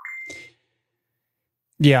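A short electronic beep: one steady high tone lasting about half a second at the start, followed by a man saying "yeah" near the end.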